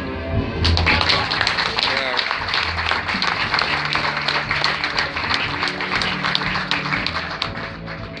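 A small audience applauding, the clapping starting about half a second in and going on steadily, with background music underneath.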